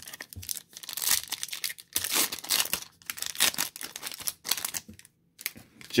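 A foil trading-card pack, a 2008 Topps Finest football pack, being torn open and crinkled in the hands in a run of irregular rustling bursts, with a short pause near the end.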